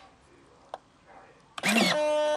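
Model hydraulic undercarriage system, mostly quiet at first, then about a second and a half in the electric hydraulic pump starts suddenly: a brief rising whine that settles into a steady hum. The pump is building pressure to the distribution valve that drives the landing-gear rams.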